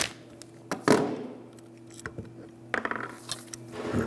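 Light metal clinks and knocks as a caliper bolt, pliers and a steel brake caliper bracket are handled and a cordless tool is set down on a wooden bench. There are two sharp clicks about a second in and a few more near the end.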